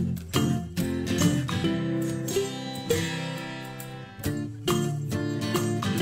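Background music led by acoustic guitar, with plucked and strummed chords.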